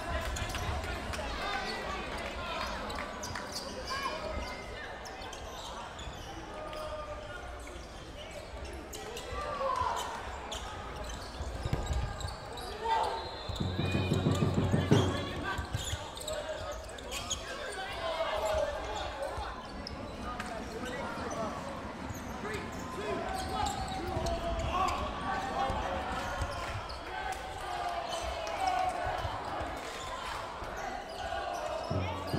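Cloth dodgeballs bouncing and smacking on a wooden sports-hall floor in repeated short knocks, with players' voices calling out around them in the large hall. A low buzzing tone sounds for about a second and a half midway.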